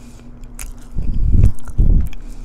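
Close-miked chewing of a mouthful of Korean corn dog, with small wet clicks and two loud, deep crunching bursts, about a second in and again near the end.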